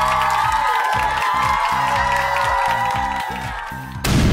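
Outro music: a held chord over a steady low beat.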